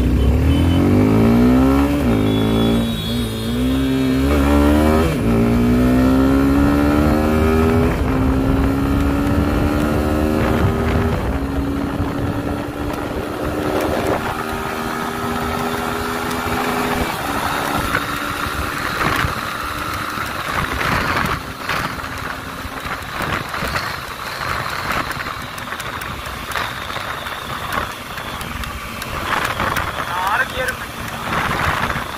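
Suzuki Gixxer SF 250's single-cylinder engine accelerating hard from a standstill through the gears. The pitch climbs in each gear and drops back at each upshift, several times over the first seventeen seconds or so. At high speed, near 120 km/h in sixth gear at 8000 to 9500 rpm, wind rush and buffeting on the microphone cover most of the engine.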